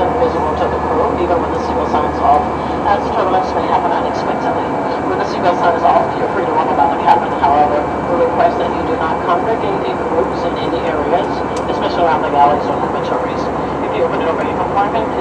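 Steady jet engine and airflow noise heard inside the cabin of an Airbus A319 in flight, with indistinct voices talking over it.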